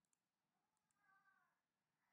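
Near silence, with a very faint high-pitched call about a second in that bends in pitch, and a couple of faint clicks.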